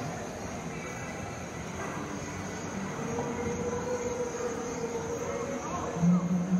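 Shopping-mall ambience: a steady background hum and faint distant voices, with a faint high whine throughout and a held mid-pitched tone from about halfway to near the end.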